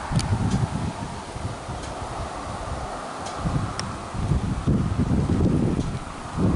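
Wind buffeting the microphone in gusts, a low rumble that grows louder in the second half.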